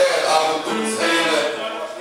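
Live rock band playing, with a man singing over electric guitars.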